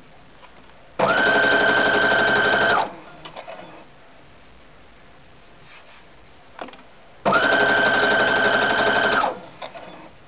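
Brother SQ-9000 computerized sewing machine stitching in two short runs of about two seconds each: a steady whine that starts and stops abruptly. It is sewing a long straight stitch at high thread tension, gathering a fabric strip into a ruffle.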